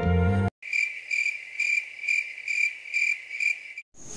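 Cricket chirping, a high pulsing trill at about two chirps a second. It starts suddenly after a short tail of sad music cuts off about half a second in, and stops abruptly just before the end.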